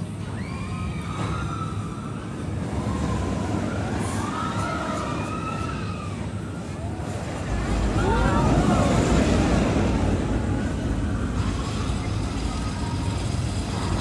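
A mine-train roller coaster rumbling along its track, loudest from about eight to ten seconds in, with riders screaming in rising and falling wails.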